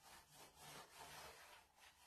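Faint, repeated scraping strokes of a small hand tool drawn across a wooden board.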